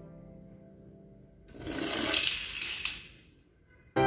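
A small toy car rolls down a board ramp and clatters onto the floor: a rattling rush with a few sharp clicks lasting about a second and a half. It comes after the last of some background music fades out.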